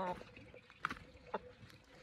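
Chicken clucking: one short, low cluck right at the start, then two brief, sharp clucks about half a second apart.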